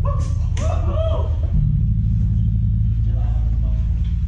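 Loud, steady low droning rumble from the stage's bass amplification, its low note shifting about a second and a half in, with a voice calling out over it.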